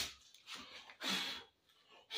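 A short, soft swish about a second in, from dirt being cleared off a plastic sheet on a workbench, with a fainter brush just before it.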